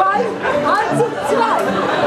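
Only speech: several stage actors' voices talking over one another.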